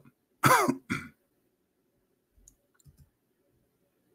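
A man coughs twice in quick succession about half a second in, the first cough with a falling voiced tail. A few faint clicks follow about two to three seconds in.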